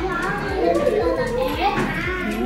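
Several children's voices talking and calling out over background music.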